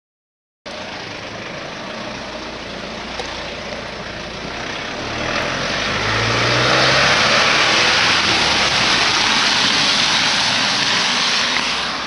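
A car driving past on a wet road: the hiss of tyres on wet tarmac and a low engine hum, swelling over a few seconds and easing off near the end.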